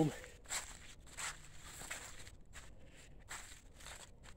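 Soft footsteps of a person walking over mud, fallen leaves and dry grass, an uneven series of light crunches.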